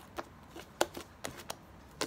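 Lilac fluffy slime being squeezed and pressed by hand, making a handful of sharp, sticky clicks and pops as air pockets in it burst.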